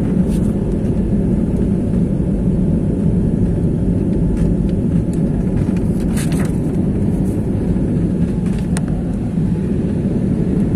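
Cabin noise of an Airbus A320-family airliner in its climb after takeoff, heard from a window seat: a steady low rumble of jet engines and airflow, with a few faint clicks.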